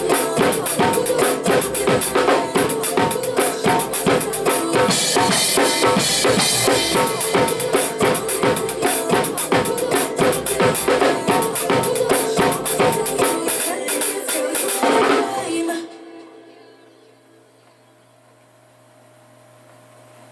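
Acoustic drum kit played with a soca backing track: a fast, steady groove of kick, snare and hi-hat, with a cymbal wash about five seconds in. The playing stops suddenly about fifteen seconds in, leaving only a fading ring.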